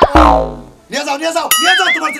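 Cartoon-style comedy sound effect: a loud downward-gliding twang with a deep low thud beneath it. About a second and a half in, a short warbling whistle effect follows over speech.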